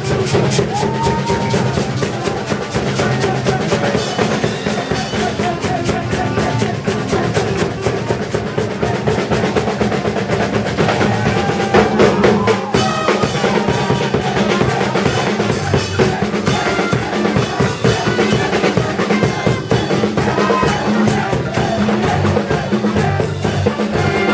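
Upbeat band music driven by a busy drum kit beat, with snare, bass drum and cymbals under sustained instrument notes. It plays on at an even loudness with no break.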